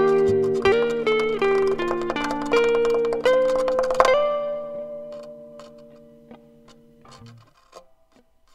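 Solo guitar playing quick plucked notes in a dissonant instrumental piece. About four seconds in, a last chord is struck, rings, and fades away over about three seconds.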